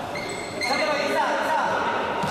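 Indistinct voices of players and onlookers calling out, echoing in a large gymnasium.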